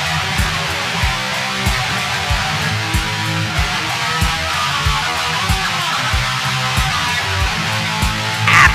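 Guitar strummed in a steady rock groove over a low beat that thumps about every two-thirds of a second.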